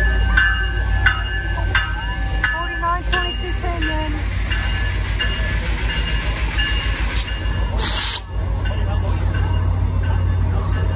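A Caltrain diesel locomotive rumbling slowly past the platform, its bell ringing about every two-thirds of a second for the first few seconds. About seven and eight seconds in, two short, sharp bursts of hissing air.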